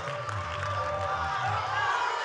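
Church music under the service: held chords with sustained low bass notes that shift pitch and stop near the end, over the murmur of the congregation.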